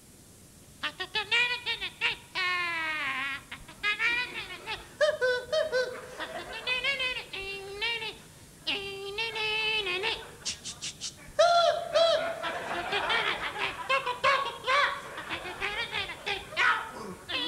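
A man making wordless vocal imitations of band instruments as a one-man band: short, high, squeaky phrases that slide and wobble in pitch, starting about a second in.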